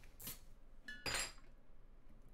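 A light knock, then a brief ringing clink about a second in.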